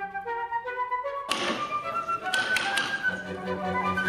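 Flute music, broken about a second and a quarter in by a stretch of live sound with several quick sharp taps, a carver's mallet striking a chisel into a wooden block.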